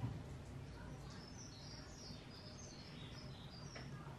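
Faint bird chirping: a quick run of short, high notes from about a second in until near the end, over a low steady room hum. A soft knock comes right at the start.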